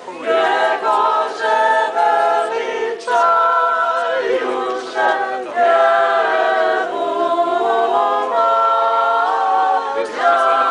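Choir singing an Orthodox hymn a cappella, several voices in held chords, in phrases broken by short breaths about every two to three seconds.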